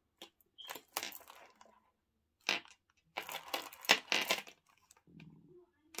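Tangled strands of glass bead necklaces being picked up and handled, the beads rattling and rustling in several short irregular bursts, loudest about four seconds in.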